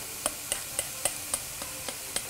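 Grated carrot and onion softening in ghee in a frying pan: a steady low sizzle with light ticks about three or four times a second.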